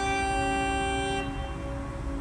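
Uilleann pipes playing a slow air in long held notes, with keyboard accompaniment. About a second in, the note softens and loses its bright upper overtones.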